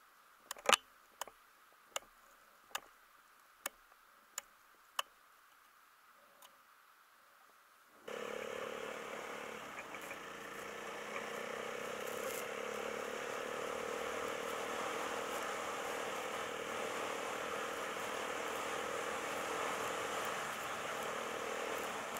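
A vehicle moving over snow: a steady hum with a rush of noise starts suddenly about eight seconds in and runs on evenly. Before it, a series of sharp clicks comes roughly once a second, the loudest near the start.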